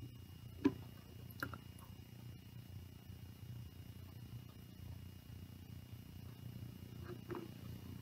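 Faint steady low room hum, with a few soft clicks from plastic bottles being handled as cooking oil is poured from one bottle into another partly filled with water; the pour itself is barely heard.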